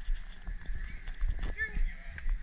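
Footsteps on a stone path, with the body-worn camera jostling, under the chatter of people nearby; a short high-pitched voice calls out about one and a half seconds in.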